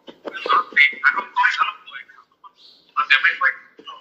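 Speech only: a voice talking in two short bursts with a pause between.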